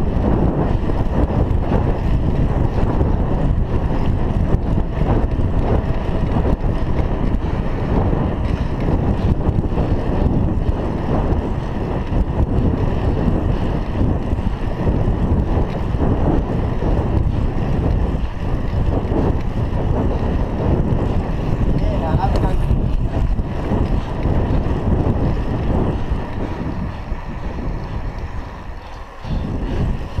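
Wind buffeting the microphone of a chest-mounted action camera on a moving bicycle: a loud, steady low rumble that eases off briefly near the end.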